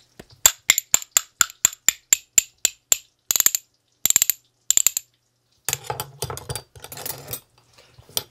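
A pair of heavy straight steel spoons played as a percussion instrument, clicking in a steady beat of about four strikes a second, then breaking into three quick rattling rolls. The strikes sound nice and clear.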